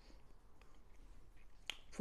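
Faint chewing of a mouthful of waffle, then one sharp mouth click, a lip smack, near the end.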